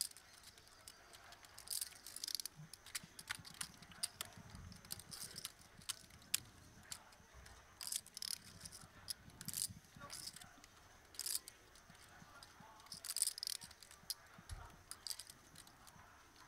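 Faint, irregular clicking of poker chips as players handle and riffle them at the table, with many short sharp clicks scattered throughout.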